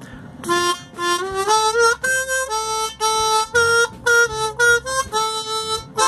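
Old diatonic harmonica playing a simple melody in single notes on its lower octave, one held note after another. That octave has drifted out of tune in its chords, but the single notes don't sound off to the player.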